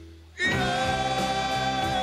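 A male pop singer singing live with a band: the accompaniment dies away, then about half a second in he comes in loudly on a long held note with vibrato over the band.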